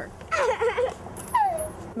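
A young boy's high-pitched cries of play: a wavering, laugh-like cry, then a short squeal falling in pitch.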